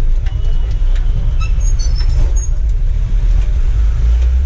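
Low, steady rumble of a pickup's engine and road noise heard from inside the cab while driving slowly, with a few faint high chirps about two seconds in.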